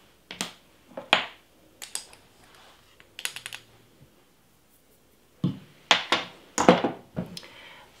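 A glass spice jar and a measuring spoon being handled: scattered small clicks and taps, a quick run of rattling clicks about three seconds in, and several louder knocks in the last three seconds.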